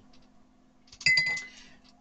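A single light clink about a second in, a hard object struck against something with a brief clear ring that fades within half a second, as the paintbrush is set aside and a pen picked up.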